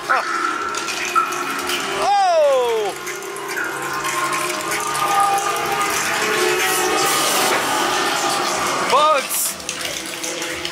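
Haunted-maze din of voices, soundtrack and hiss, with a long scream falling in pitch about two seconds in and a short shriek near the end.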